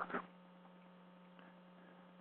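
Faint, steady electrical hum in the recording, a single low constant tone under quiet room tone, after the clipped end of a spoken word.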